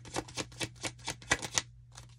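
A deck of tarot cards being shuffled by hand: a quick run of crisp card clicks, about five a second, that stops near the end.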